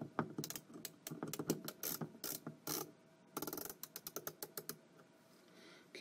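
Hand screwdriver tightening a screw in an RV door handle's metal mounting plate: two runs of quick clicks with a short pause between, then it goes quiet near the end.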